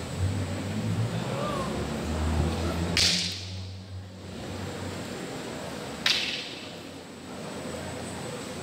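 Two sharp cracks about three seconds apart from a walking cane being struck during a tai chi cane form, each ringing briefly in the hall, with a low rumble before the first.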